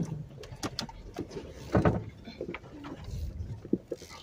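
A person laughs about two seconds in, the loudest sound. Around it, a Jeep Wrangler crawls slowly over rough trail: a low engine rumble with scattered knocks and creaks from the vehicle.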